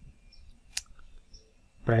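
A single computer mouse click, about three quarters of a second in, as a dropdown option is chosen. A man's voice starts speaking at the very end.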